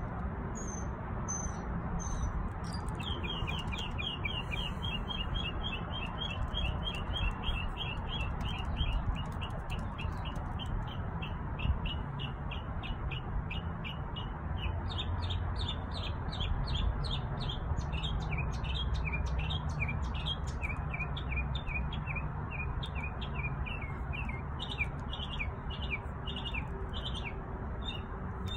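Backyard songbird singing: a long, fast run of repeated high chirps starts about three seconds in and carries on to the end, after a few higher chirps at the start. A steady low rumble runs underneath.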